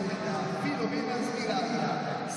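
Indistinct speech over a steady stadium background, with no clear words and no throw or impact sounds.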